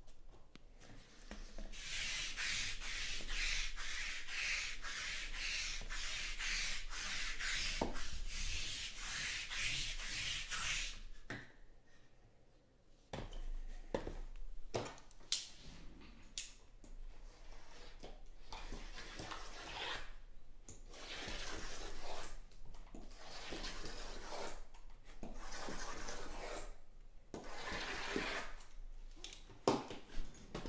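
Shrink-wrapped cardboard trading-card boxes rubbing and scraping against each other and the table as they are slid and handled, a dense scratchy friction sound that stops for about two seconds just past the middle. After that the rubbing comes and goes, with a knife working at the plastic wrap and a few sharp clicks.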